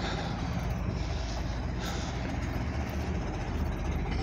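Steady low rumble of nearby vehicle engines and traffic, with no sudden events.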